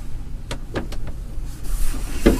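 A mattress in a fitted sheet being manhandled over a wooden slatted bed frame: a few sharp knocks, then a scraping rustle of fabric near the end, over a steady low rumble.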